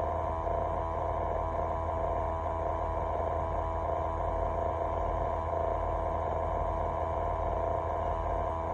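Steady hum of an idling truck, heard inside the cab, made of several held tones that do not change.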